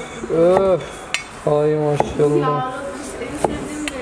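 Heavy butcher's cleaver (satır) slicing pastırma by hand, its blade knocking sharply on a wooden cutting board three times. Drawn-out admiring vocal exclamations fall between the knocks.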